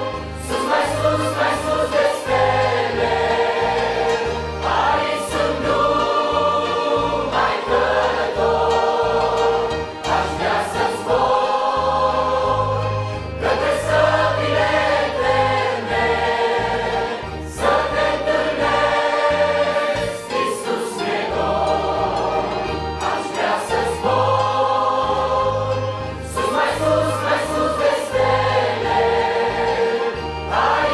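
Choir singing a Christian hymn, accompanied by two piano accordions and an acoustic guitar, with a steady beat in the bass.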